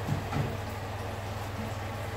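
A metal baking tray slides out on the oven rack with a couple of faint light knocks near the start, over a steady low hum.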